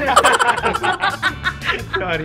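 A group of people laughing hard together in rapid repeated bursts, with background music underneath.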